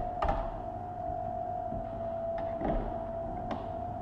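Hard plastic parts of an automatic soap dispenser being handled: a few light clicks and knocks as the refill container is lifted out of the housing and the casing is turned over, over a steady background tone.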